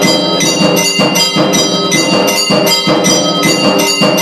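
Temple bells rung continuously in a quick, even beat of about three strikes a second, their ringing tones overlapping, as part of the aarti.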